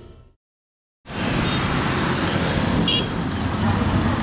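Theme music fading out, a moment of silence, then street ambience cutting in about a second in: steady traffic noise with background voices.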